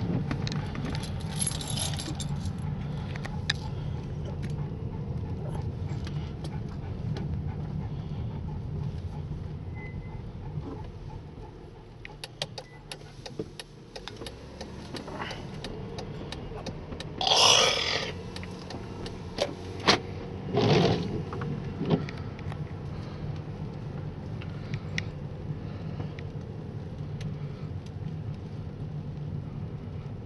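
Car interior while driving on wet roads: a steady engine and tyre drone with road hiss, easing off for a couple of seconds near the middle. Louder swishes come about two thirds of the way through, around 17–18 s and again near 21 s.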